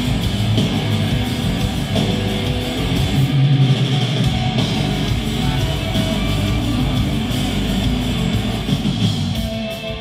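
Loud rock band playing with electric guitar to the fore. The deep bass drops out for about a second around the middle, then comes back in.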